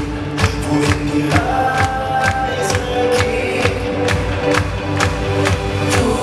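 Schlager-pop song with a steady dance beat of about two beats a second, performed by a four-man vocal group singing into handheld microphones over a backing track. A long held note comes in the middle.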